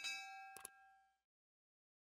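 End-card subscribe animation sound effect: a bell-like ding of several tones that rings and fades out within about a second, with a sharp mouse-click about half a second in.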